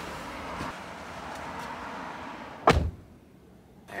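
A steady outdoor hiss through an open car door, then a single loud thump as the car door is shut, about two and a half seconds in; after it, the closed cabin is much quieter.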